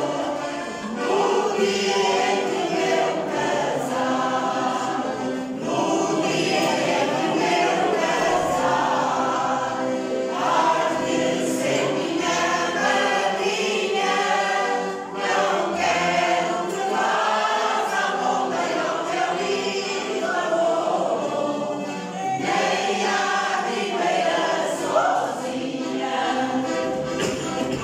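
A choir of older amateur singers singing a song together, in phrases separated by brief breaths.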